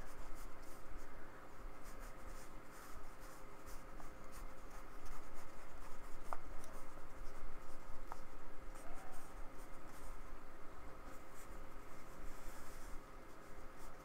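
Small round paintbrush scrubbing and dabbing thick acrylic paint onto textured paper in short, irregular scratchy strokes.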